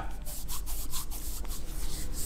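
Hands rubbing palm against palm: a quick run of dry, rasping strokes.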